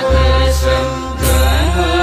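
Bodo devotional song (Bathou aroz): a chanted vocal line over held bass notes, with two sharp beats in the first second or so.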